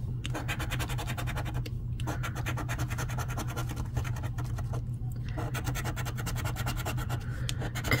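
A coin scraping the latex coating off a paper scratch-off lottery ticket in quick, repeated strokes, with short pauses about two and five seconds in.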